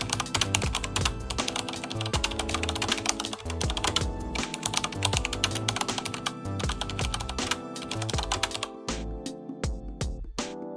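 Rapid computer-keyboard typing sound effect, many key clicks a second, over background music; the typing thins out and stops near the end.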